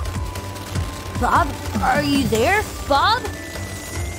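Background music with three short rising vocal sounds from a cartoon character's voice, wordless exclamations rather than speech.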